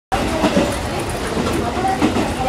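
Interior of a diesel railcar running along the line: a steady rumble of the engine and of the wheels on the rails.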